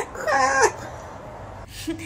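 A baby's short, wavering whimper lasting about half a second.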